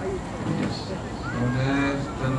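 A riding instructor's voice calling out, beginning about two-thirds of the way in with one long drawn-out vowel held on a steady pitch.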